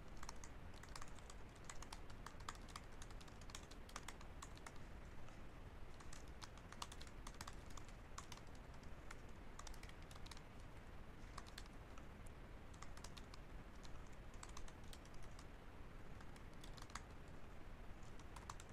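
Faint typing on a computer keyboard: irregular runs of keystroke clicks with short pauses between them.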